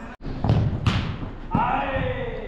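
A football kicked or struck twice, two solid thumps about half a second apart, followed by a player's shout.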